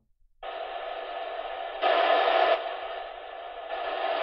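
Retevis MA1 mobile radio's speaker hissing with open-squelch static, cutting in about half a second in. The hiss jumps louder about two seconds in, falls back, then rises again near the end as the volume knob is turned.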